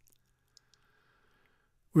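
Near silence with two faint clicks in quick succession about half a second in, then a man's speaking voice starts at the very end.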